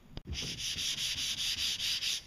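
Hand sanding of a fiberglass boat pontoon hull with sandpaper: fast, even back-and-forth rasping strokes, about seven a second, starting a moment in.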